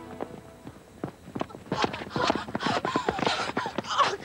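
Running footsteps of several sprinters on a synthetic athletics track, coming thicker and louder from about a second in as the pack draws near.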